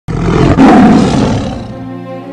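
A tiger's roar used as a sound effect: it starts suddenly, is loudest in its first second and dies away over about a second and a half, as music comes in beneath it.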